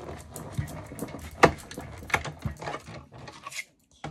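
Manual die-cutting machine pulling a plate sandwich with a metal frame die and copper foil through its rollers: a grinding, rubbing run with several sharp clicks, the loudest about one and a half seconds in. It stops shortly before the end.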